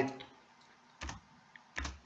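Two faint computer key clicks, each with a low thud, about three-quarters of a second apart, advancing the slide animation during a presentation.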